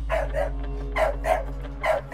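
A dog barking repeatedly: two quick pairs of barks and a fifth near the end, over a low steady hum.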